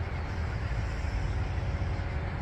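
Steady outdoor background noise, a low rumble with no distinct events.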